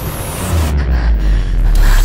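Dramatic film sound effect: a deep, loud rumble under a rushing whoosh that swells and rises sharply near the end.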